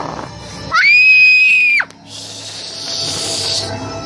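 A loud, high-pitched shriek lasting about a second, rising at the start and dropping off sharply, over background music, followed by a hissing noise.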